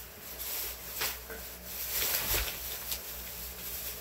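Plastic grocery bag rustling and crinkling as it is handled and tied up, with a few light knocks and a dull thump a little past the middle.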